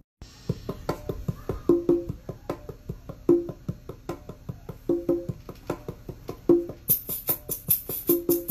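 A hip-hop beat playing: short woody percussion hits in a steady rhythm, with a recurring pitched note, and hi-hat-like ticks coming in about seven seconds in.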